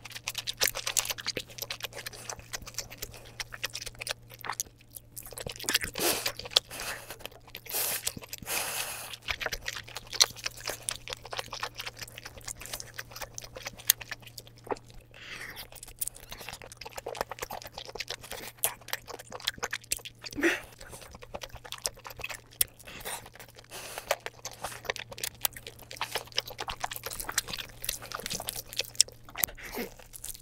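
Close-miked eating sounds of a person biting and chewing lobster meat: steady chewing with many short, quick clicks and crunches, some louder than others.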